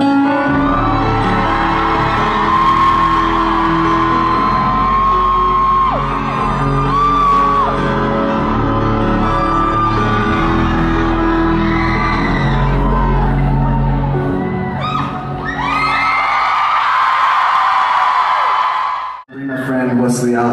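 A live pop song in a large hall, with singing over a backing track with heavy bass and fans screaming and whooping over it. About three-quarters of the way through, the bass drops out as the song ends and the screaming carries on. The sound cuts off sharply about a second before the end.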